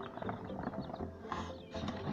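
Newly hatched king quail chicks peeping and scrabbling in a plastic tub: a quick run of small clicks with short high calls.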